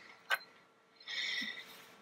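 A single sharp click from the laptop's trackpad button about a third of a second in, as an item is opened on screen. About a second in comes a brief, faint high-pitched hiss with a thin whistle-like tone.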